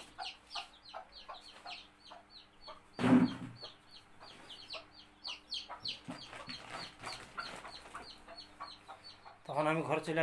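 Chickens clucking, with a quick run of short, high, falling chirps, about five a second, and one louder call about three seconds in.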